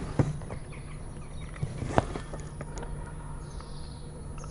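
A few faint clicks and knocks from test probes being handled at a light fitting, the sharpest about two seconds in, over a steady low hum.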